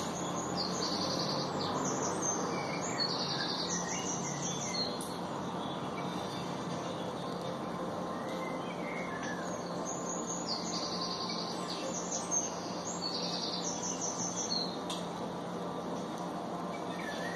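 Birds chirping in short, rapid, high-pitched trills over a steady hiss; the same run of phrases comes round again about ten seconds later.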